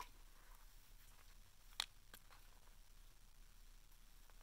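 Near silence: room tone, broken by one short click a little under two seconds in and a fainter one just after, from fingers working a small plastic squeeze tube.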